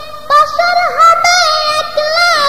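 A high solo voice singing a Bengali Islamic song (gojol) without instrumental accompaniment, drawing out long held notes with wavering, bending ornaments; a brief lull at the start before the voice comes back strongly about a third of a second in.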